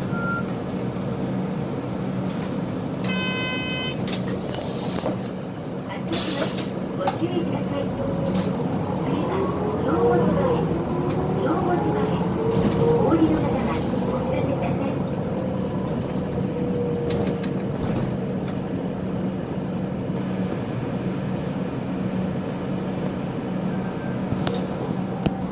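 City bus running on the road, its engine hum steady in the cabin. A short electronic beep comes about three seconds in, a brief hiss about six seconds in, and a voice is heard in the middle.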